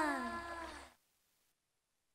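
The last held note of a sung TV theme tune gliding down in pitch and fading out, cutting off to dead silence about a second in.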